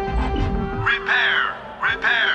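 Cartoon soundtrack music with two short warbling electronic sound effects, the first about a second in and the second near the end.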